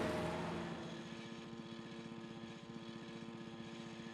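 Small car engine sound effect: a loud burst of engine noise fades over the first second and settles into a quiet, steady, rapidly pulsing run.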